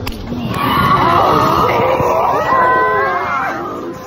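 Girls' voices shrieking together in excitement, high and wavering, loudest through the middle and fading near the end.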